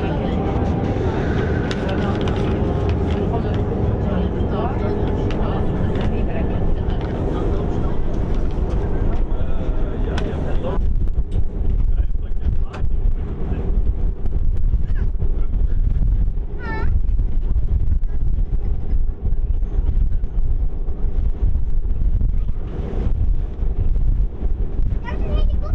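Wind buffeting the microphone over the low, steady rumble of a harbour ferry under way, with background voices over the first half. The gusting grows more uneven from about halfway through, and a brief high call sounds near 17 seconds.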